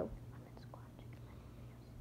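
Faint, soft rubbing of a wet paper towel scrubbing knit pant fabric to lift off dried slime, over a low steady hum.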